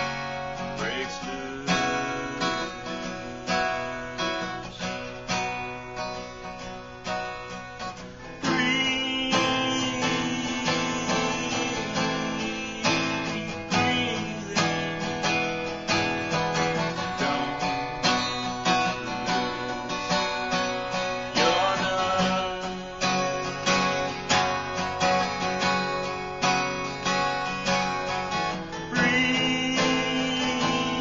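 Steel-string acoustic guitar strummed in a slow, steady rhythm of chords, with a man singing over it. The playing grows noticeably louder about eight seconds in.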